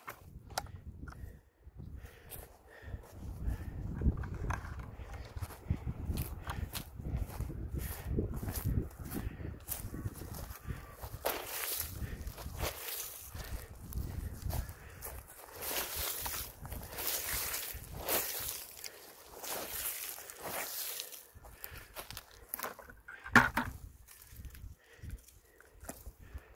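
Footsteps through dry grass, dead stalks and leaves, crunching and rustling underfoot, thickest in the middle stretch. A low rumble sits under the first part, and one louder knock comes near the end.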